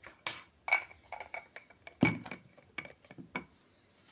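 Irregular light clicks and knocks from skincare containers being handled, about a dozen in all, the loudest about two seconds in. A faint steady high whine runs under the middle of it.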